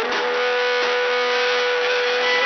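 Live rock band with electric guitars playing an instrumental passage, a lead electric guitar holding one long sustained note over the band.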